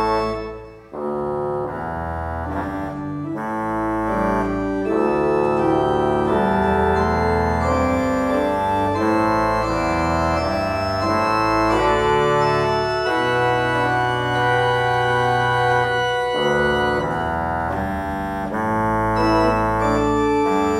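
Pipe organ playing sustained chords that change every second or so. The sound dies away briefly just before a second in, then the playing resumes and carries on steadily.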